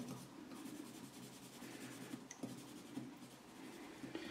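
Faint pencil scratching on a sheet of paper laid over a metal plate, rubbing over it to mark the positions of the screw holes.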